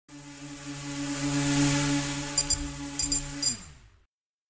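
Intro logo sound effect: a steady low drone under a swelling whoosh, with a few short bright metallic ticks in the second half. It then drops in pitch and fades out just before the end.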